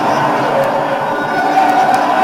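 Laugh track: a large audience laughing together, a dense and steady wash of many voices.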